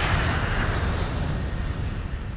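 Jet aircraft flyby sound effect: a loud rush of engine noise with a deep rumble, loudest in the first second and beginning to fade near the end.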